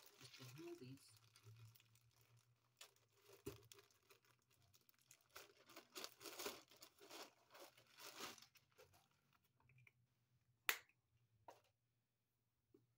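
A plastic shipping bag crinkling and tearing as it is pulled open by hand, in faint, irregular bursts of rustling. A single sharp click comes near the end.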